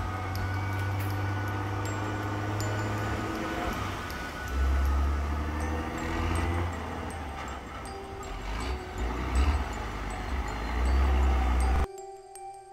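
Tractor engines running at the surf line, with heavy gusts rumbling on the microphone over the waves and music playing underneath; the sound cuts off abruptly near the end.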